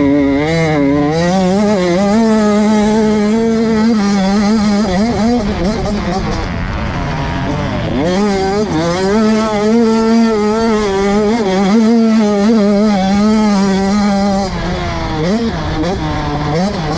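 Motocross bike engine revving hard on a dirt track, its pitch wavering constantly. It drops as the throttle is eased about six seconds in, climbs again near eight seconds, and falls and rises once more near the end.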